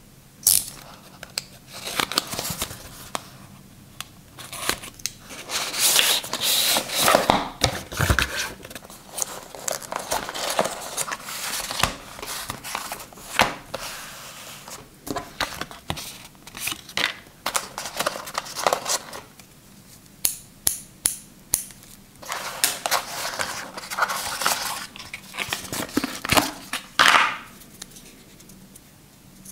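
Cardboard retail box and its packaging being handled and opened by hand: an irregular run of rustles, scrapes, crinkles and sharp taps as the box, inner tray and paper inserts are moved about.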